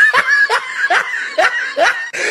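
A person laughing in a run of short bursts, each rising in pitch, about two to three a second.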